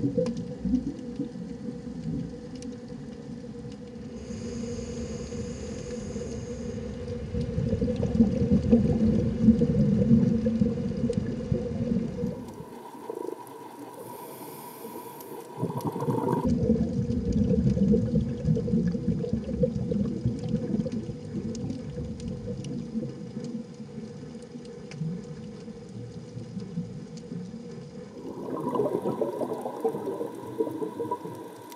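Low underwater rumble picked up by a dive camera in its housing, swelling and easing, with a steady faint hum running under it. The sound changes abruptly three times, where the shots change.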